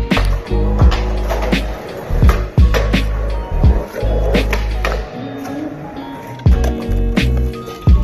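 Music with deep held bass notes and sharp, regular percussive hits, mixed with skateboard sounds: wheels rolling and board clacks on concrete.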